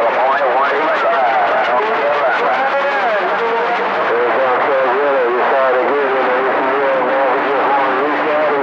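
Voices coming through a CB radio receiver on channel 28, buried in steady static hiss so that the words can't be made out. These are distant stations heard by skip.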